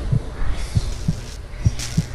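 A slow heartbeat-like pulse of low paired thuds, about one pair a second, over a steady low hum.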